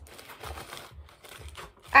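Paper crinkling and rustling as hands rummage through a bag of small paper-wrapped parcels. Under it, a faint, steady low thumping of bass from music playing elsewhere in the house.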